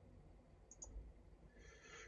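Near silence broken by two quick, faint computer mouse clicks about three-quarters of a second in.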